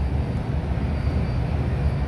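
Steady low rumble of background noise, with a fainter even hiss above it.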